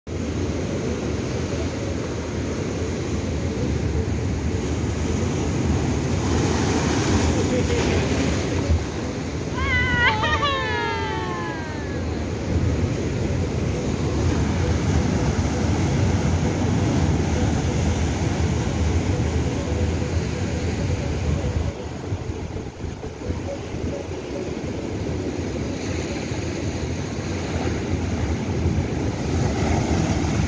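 Ocean surf breaking and washing over a rocky shore: a continuous rush of waves with wind buffeting the microphone, swelling near the end as a wave bursts up against the rocks. About ten seconds in, a brief high voice-like cry sweeps downward a few times.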